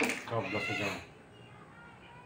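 A man's brief wordless vocal sound, a hum or drawn-out murmur with a wavering pitch, lasting about a second. After it there is only faint kitchen room tone.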